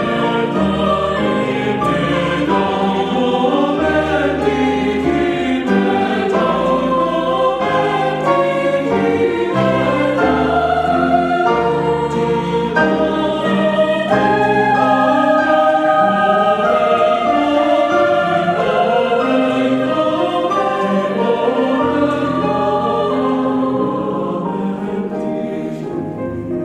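Mixed choir singing a sacred choral piece with piano accompaniment. Near the end the sound gets quieter and the voices thin out.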